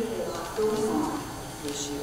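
Speech: a woman reading aloud into a microphone, in short phrases at a fairly level pitch.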